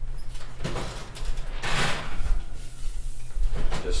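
Oven door being opened and handled, with a clattering scrape as a bamboo pizza peel slides a pizza in the oven.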